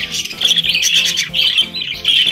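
Budgerigar chicks squawking and chirping without pause, a dense high-pitched chorus. The cries come as a chick is handled to be fitted with a leg ring; crying during ringing is normal and, short of a scream, not a sign of pain.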